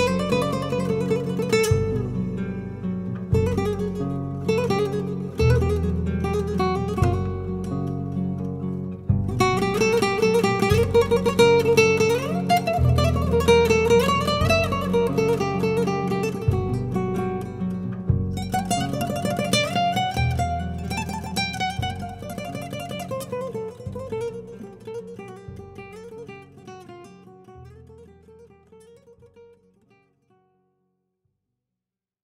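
Solo nylon-string guitar playing a plucked melody over low bass notes that change every second or two. The playing grows gradually softer over the last several seconds and dies away as the piece ends.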